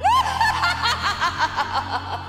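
A woman's exaggerated witch's cackle: a shrill rising whoop, then a rapid run of repeated 'ha's, about six a second, fading towards the end.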